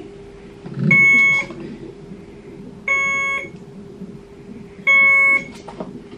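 Hospital IV infusion pump alarm beeping, a short multi-tone beep about every two seconds (three beeps), over a steady low hum. The alarm signals a patient-side occlusion in the IV line.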